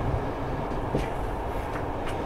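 Passenger train running, heard from inside the carriage: a steady low rumble with a sharp click about a second in and another at the end.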